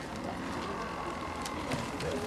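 A group of people getting to their feet: steady shuffling and rustling, with a faint knock about one and a half seconds in.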